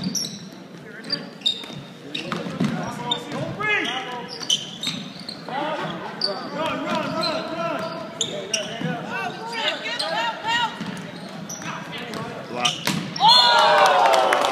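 A basketball game in a gym: a ball dribbled on the hardwood court among overlapping shouts from players and spectators, echoing in the hall. Near the end a sudden loud burst of shouting and cheering breaks out.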